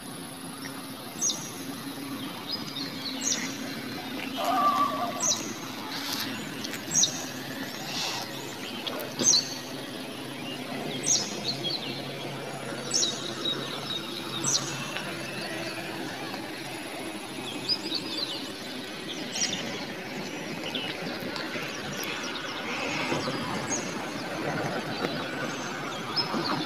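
A bird calling with short, high, falling chirps, one every second or two, over steady outdoor background noise with a faint low hum.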